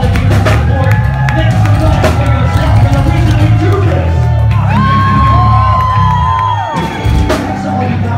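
Live rock band playing a loud, sustained full-band passage with heavy bass and drums, while the club crowd cheers and whoops. It eases off near the end.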